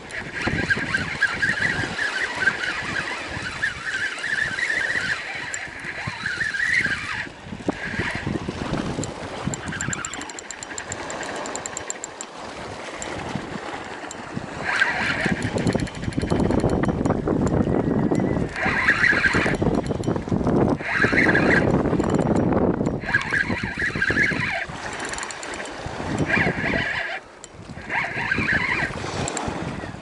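A spinning reel's drag giving line to a hooked fish, with repeated bursts of a high buzzing whine: long at first, then short bursts every second or two. Between the bursts there is a heavy rumble of wind on the microphone and the sound of reeling.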